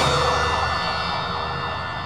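Tail of a TV crime programme's theme sting: a sustained, siren-like sound effect held on steady tones, fading out gradually.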